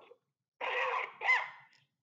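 A person sneezing once, starting about half a second in.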